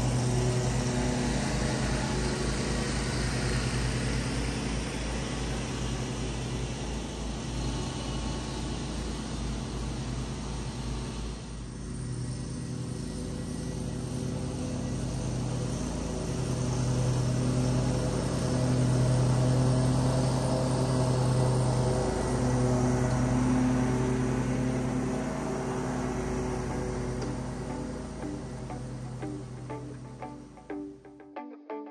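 Background music with sustained low notes, changing character about twelve seconds in.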